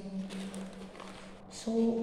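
A voice speaking, breaking off at the start and resuming near the end, over a steady low hum.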